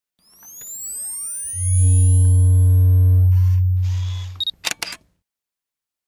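Logo-intro sound effect: a rising sweep, then a loud deep bass drone with higher steady tones over it, a couple of swishes, a short high beep, and a quick run of sharp clicks about five seconds in.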